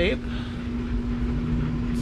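Steady low hum with an uneven rumble beneath it, an unidentified machine sound coming from outside.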